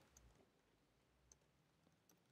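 Near silence, with a couple of faint clicks.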